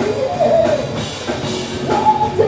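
A live rock band playing: electric guitars and a drum kit, with a pitched line that bends up and down over the band.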